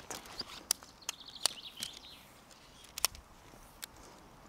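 Sections of a tent pole clicking against each other as the pole is unfolded and handled: a few sharp, separate clicks at irregular intervals. A short bird call sounds in the background about a second in.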